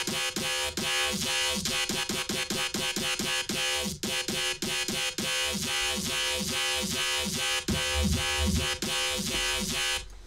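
Synthesized dubstep/electro bass looping in short repeated notes, about four a second, each with a quick downward pitch sweep, played through an EQ whose curve is being reshaped. The low end swells heavier near the end.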